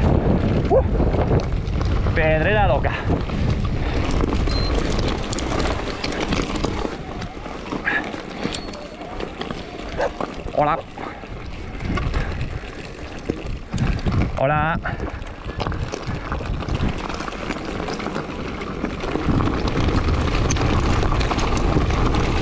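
Wind rushing over the microphone and the rumble of a mountain bike's tyres rolling over a loose, stony trail while riding downhill. The rumble is loudest at the start and again near the end, easing off in the middle.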